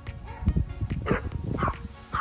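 A dog barking repeatedly, about twice a second, over background music.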